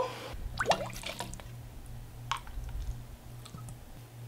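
Plastic squeeze bottle of diluted tie-dye being squeezed, with faint squishing and dripping, a brief squeak and a few small clicks, over a low steady hum.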